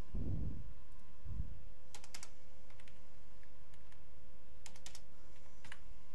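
Computer keyboard keys being typed in short bursts: a few clicks about two seconds in, a quick run of four or five keystrokes near the five-second mark, and a single click near the end, as a number is entered into a form field. A couple of low dull thuds come near the start, over a faint steady electrical hum.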